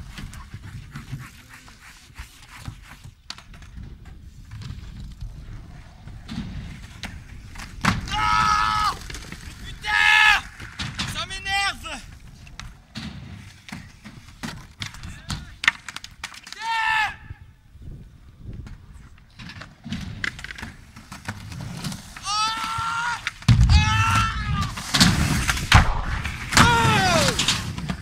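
Skateboard rolling on concrete with repeated clacks and knocks of the board. Several loud yells break in a few times, most of all in the last few seconds.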